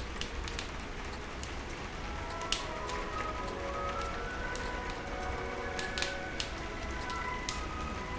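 Rain pattering on a window over a wood stove's fire, with sharp crackles and pops now and then. Soft music comes in about a second and a half in and plays quietly over the rain.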